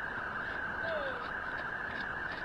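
Steady rushing noise of wind on the microphone, with a single short falling whistle about a second in.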